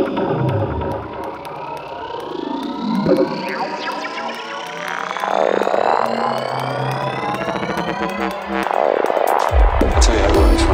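Electronic psytrance music intro: synthesizer sweeps with many tones rising slowly together. Shortly before the end a pulsing low bass line comes in.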